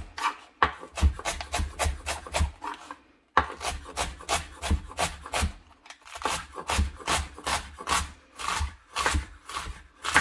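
Kitchen knife finely shredding cabbage on a wooden cutting board: a quick, steady run of cuts, about four a second, the blade going through the leaves and striking the board each time, with a short pause about three seconds in.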